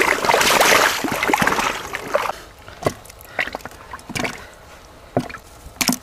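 Legs in waders sloshing through shallow muddy water for about two seconds, then about five separate short splashes and squelches.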